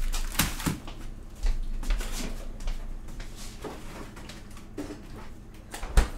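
Light kitchen handling noises: a few soft clicks and knocks, with one sharp knock near the end.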